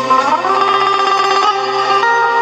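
Electric guitar playing an instrumental melody line in a live band, with fast tremolo picking on held notes. The line slides up to a higher note about half a second in.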